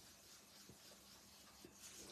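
Faint rubbing of an ink blending brush on paper, with a couple of small ticks.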